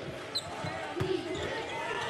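A basketball bouncing on a hardwood court in a few separate thuds, with a short high sneaker squeak about half a second in, over the murmur of the arena crowd.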